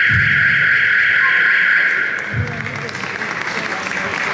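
Scoreboard time buzzer sounding as one steady, loud buzz that stops about two seconds in, signalling that the period's time has run out. Crowd noise and applause in the hall continue underneath.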